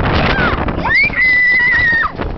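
A rider screaming on a fairground ride as it turns over: a short falling cry, then a long high scream held through the second half, over wind buffeting the microphone.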